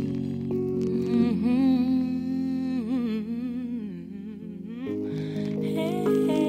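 Slow song: a voice hums a wordless, wavering melody over held chords, dipping slightly about four seconds in.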